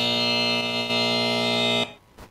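Debate countdown timer's time-up signal: one steady electronic buzzer tone with many overtones, holding an even pitch for just under two seconds before cutting off sharply.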